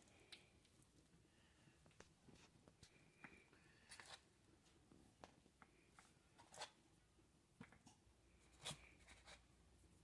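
Near silence broken by a few faint, sharp clicks and knocks, spaced out over several seconds, as pool balls are set down one at a time on a foam buffer pad and against each other.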